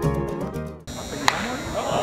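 A short burst of music ends abruptly just under a second in and gives way to ballpark crowd noise and voices. About a second later a single sharp crack sounds, a wooden bat hitting a baseball.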